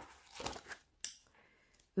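Paper pages of a paperback booklet being leafed through: a soft rustle, then one crisp page flip about a second in.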